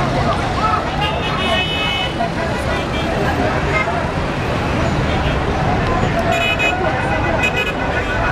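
Busy street: many voices talking at once over traffic noise, with car horns sounding briefly about a second and a half in and again near the end.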